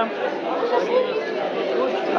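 Chatter of many overlapping voices from several group discussions going on at once in a large hall.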